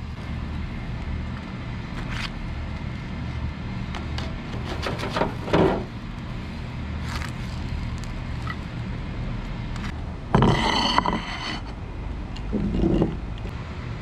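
Metal spatula scraping and clicking against a charcoal grill's grate while grilled fish fillets are lifted off, over a steady low background rumble. About ten seconds in, a louder, harsher noise lasts about a second.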